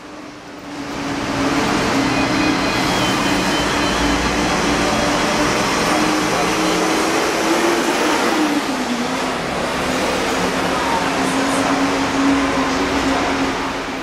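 Roosevelt Island Tram cabin riding and pulling into its station: a loud, steady rushing and mechanical hum with a low drone that drops in pitch about eight seconds in as the cabin slows at the platform.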